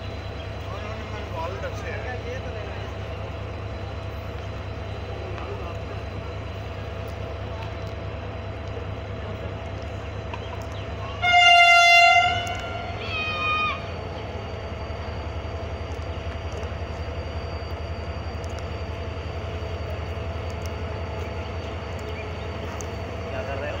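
Diesel locomotive horn sounding two blasts about eleven seconds in: a long, loud one of about a second, then a shorter, quieter one that drops in pitch as it ends. A steady low rumble of the train's diesel engine runs underneath.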